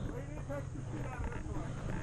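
Faint, distant talking over a low steady rumble.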